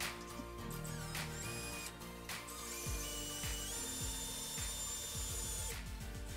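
Cordless drill-driver running while driving screws into a clothes-rail bracket: a short whir about a second and a half in, then a longer run whose pitch steps up partway through and stops just before the end. Background music plays throughout.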